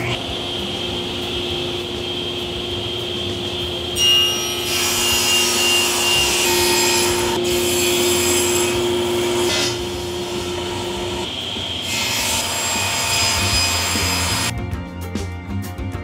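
Table saw with its motor humming steadily, cutting through cherry plywood in several passes, each cut a loud rush of blade through wood. Near the end the saw sound gives way to guitar music.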